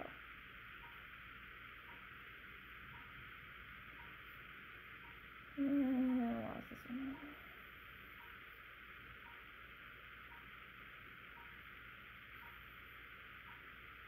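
A woman's short two-part hum, like "mm-hmm", about six seconds in, over steady background hiss.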